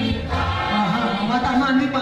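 Live gospel praise music: voices singing together over instrumental accompaniment.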